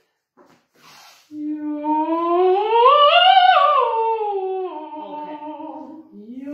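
A short breath in, then a woman's voice humming one unbroken legato glide that rises smoothly to a high peak about halfway through and slides slowly back down, the notes joined with no break, as in a vocal siren exercise.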